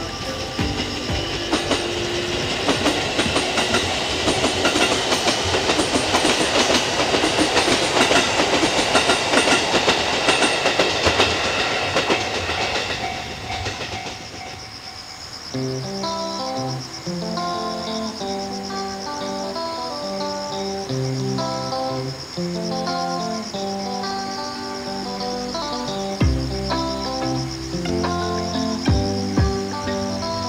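Electric commuter train, a JR E531 series, running over the rails with a steady wheel noise and clatter. The noise fades out about halfway through, and from there on background music plays.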